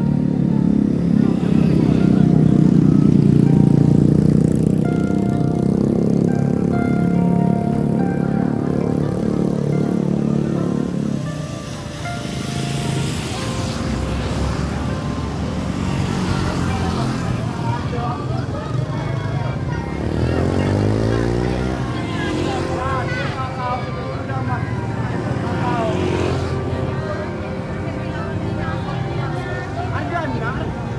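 Motorcycle engines running on a village road mixed with people's voices; one engine revs up and falls away about twenty seconds in.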